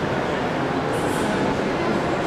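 Steady, dense din of a reverberant sports hall during an amateur boxing bout: a continuous murmur of room and crowd noise with no breaks, and a brief high scrape about a second in.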